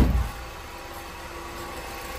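A single thump at the very start, then a Honda car engine idling steadily.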